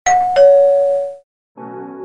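Two-note ding-dong chime: a higher tone, then a lower one a third of a second later, ringing out and fading within about a second. After a brief gap, soft sustained music chords begin.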